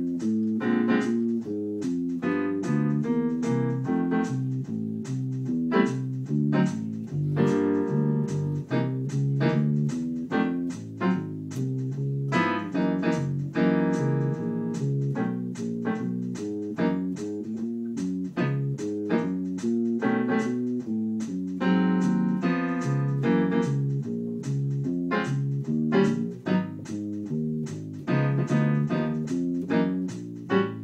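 Electric bass played fingerstyle: a steady walking blues bass line of evenly spaced notes, moving through the changes of a twelve-bar blues and on into successive keys.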